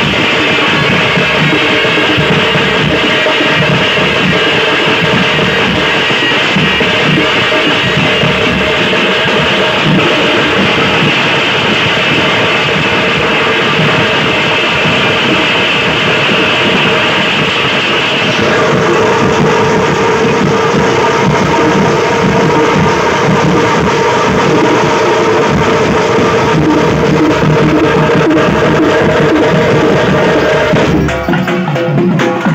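A thappu drum troupe playing fast, loud, continuous rhythms on the frame drums. Held melody notes sound above the drumming and shift to a new pattern about eighteen seconds in.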